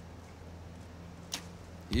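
A compound bow being shot: a single sharp snap about a second and a half in, over a faint steady background hum.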